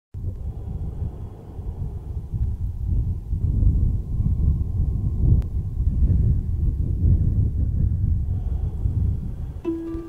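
Low wind rumble gusting over the microphone, rising and falling. Plucked-string music, harp- or guitar-like, comes in just before the end.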